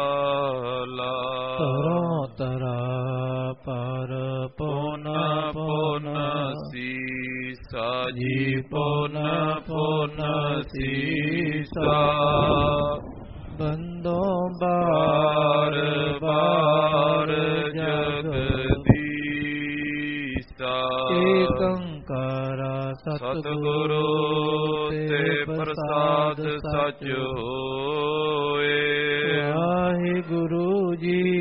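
Devotional chanting: a voice holding long, drawn-out melodic phrases with short breaks between them. There is one sharp click a little past halfway through.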